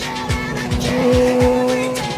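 A motorcycle engine holding a steady note that grows louder about halfway through as the bike approaches, heard over pop music with a regular beat.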